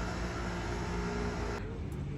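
Street traffic: a motor vehicle's engine running steadily with a low hum, dropping to quieter street ambience about one and a half seconds in.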